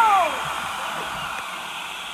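A long out-of-date 1982 six-man liferaft inflating from its gas cylinder: a steady rushing hiss of gas filling the tubes and canopy, slowly getting quieter.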